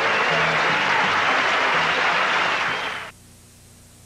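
Audience applauding after a live band's song, with a few low instrument notes still sounding under it. The sound cuts off suddenly about three seconds in, leaving only a faint steady hiss.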